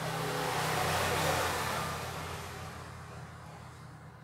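A road vehicle passing by: a steady rush of engine and road noise that swells to its loudest about a second in, then fades away gradually.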